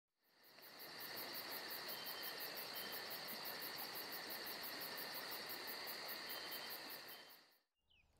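Steady chirring of insects, fading in just after the start and fading out about half a second before the end.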